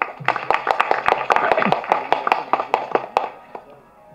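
Audience applauding: a burst of dense, irregular clapping that dies away about three seconds in.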